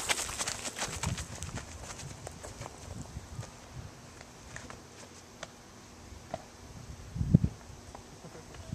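Running footsteps crunching on gravel, quick and close at first, then fading and thinning out as the runner gets farther away. A brief low thump comes near the end and is the loudest sound.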